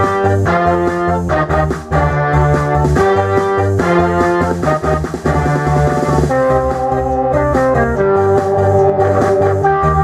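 Instrumental karaoke backing track of a Korean trot song, played by an ELF accompaniment machine without singing.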